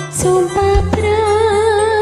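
A woman singing a Javanese song with wavering vibrato over a music backing track. A bright cymbal-like hit sounds just after the start, and a low bass note comes in about half a second in.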